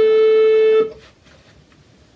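A recorder holding one steady note, which ends about a second in.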